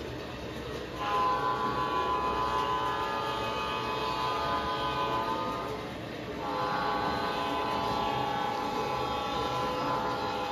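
Diesel air horn from a G scale model locomotive's sound system: two long blasts. The first starts about a second in, and the second starts just past halfway and runs on. Under the horn is the steady low running noise of the model train on the track.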